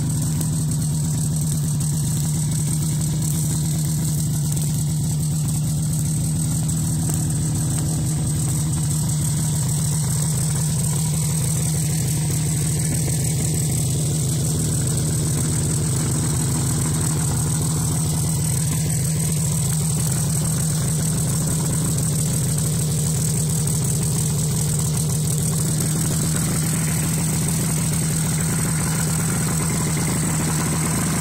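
Vintage Scorpion Lil Whip snowmobile's small two-stroke engine idling steadily.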